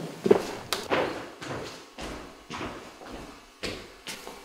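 Footsteps and scattered knocks of school desks and chairs as a student walks back to her seat; about six separate sharp knocks spread through the few seconds.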